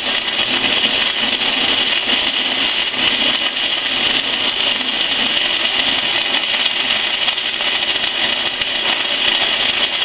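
Stick-welding arc from a 6011 electrode crackling steadily and loudly while laying an open-root pass with the whip-and-pause technique. This crackle is the sign that the arc is burning through to the back side of the joint, holding a keyhole.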